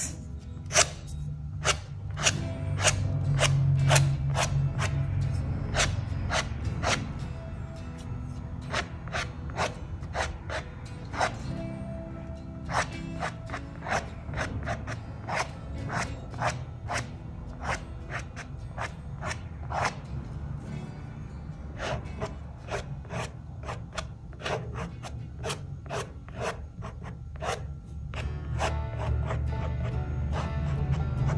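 Wooden stick scratching quick stems into the painted surface of Arches cold-pressed watercolour paper. It makes many short, sharp scrapes, about two a second, with brief pauses between runs, over background music.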